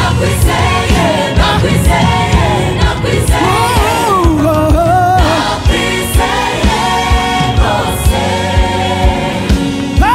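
Live gospel band playing: a male lead singer and backing singers sing in Kinyarwanda over drum kit and bass guitar, with a steady drum beat.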